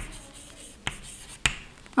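Chalk writing on a blackboard: a faint scratching, with three sharp taps as the chalk strikes the board.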